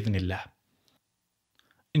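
A man's speaking voice ending a word, then about a second and a half of near silence with a couple of faint clicks, before his voice starts again at the very end.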